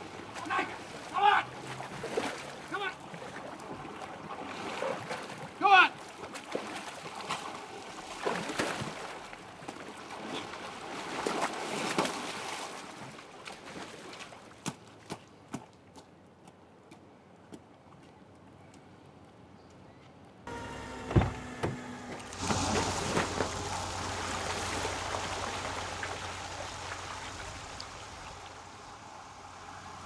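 Water splashing and sloshing around a car that has been driven into a lake, with short shouts in the first few seconds. After a sudden change about two-thirds of the way in, a steady hiss with a low hum takes over.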